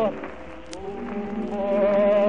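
Old acoustic gramophone recording of an operatic tenor: a loud held note with wide vibrato breaks off at the very start. After a short hush with a single click of record surface noise, the accompaniment comes in on a sustained chord that swells louder, over steady surface hiss.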